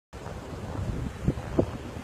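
Wind buffeting the microphone over the wash of surf on a beach, with two short louder bumps about a second and a half in.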